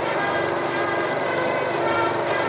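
Film score holding sustained chords under a steady hiss and crackle, played back from a 16mm print's optical soundtrack.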